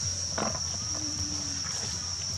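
Insects, crickets or cicadas, keeping up a steady high-pitched drone, with a brief low rustle about half a second in.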